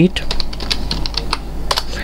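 Computer keyboard being typed on: a quick, uneven run of key clicks, about six or seven a second.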